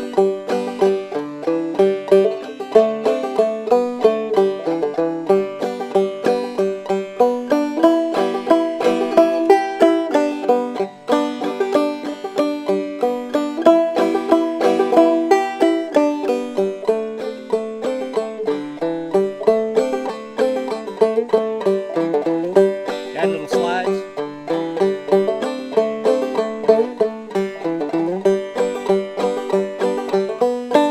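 Five-string banjo in open G tuning, playing an old-time fiddle tune as a continuous stream of plucked notes.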